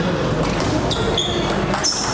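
Table tennis rally: the celluloid ball clicking sharply off the rubber-faced bats and the table in quick succession, with brief high squeaks of shoes on the hall floor as the players move.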